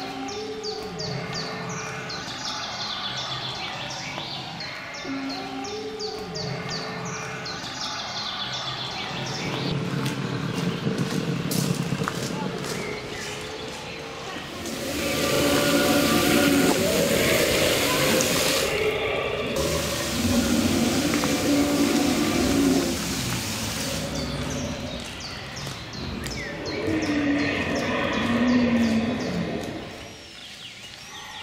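Animatronic dinosaur figures growling through their loudspeakers, with a loud rushing spray of water in the middle as a dinosaur figure squirts a jet into a stone pond, starting about fifteen seconds in and stopping sharply about nine seconds later.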